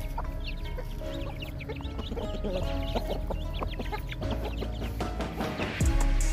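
Chickens clucking and small chicks peeping in many short high calls, over background music.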